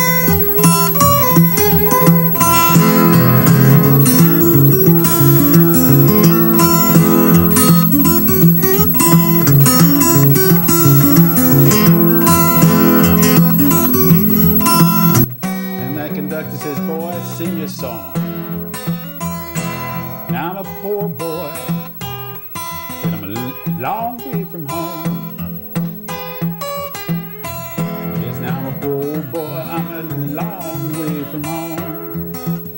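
Steel-string acoustic guitar with a capo, fingerpicked in a train imitation that is picking up speed. The first half is loud and dense. About halfway through it drops suddenly to quieter, sparser playing with notes gliding in pitch.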